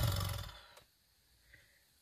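A person's breathy exhale, fading out within about a second.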